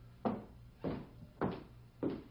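Footsteps thudding on a hollow wooden floor: three heavy, evenly paced steps a little over half a second apart, over a faint low hum.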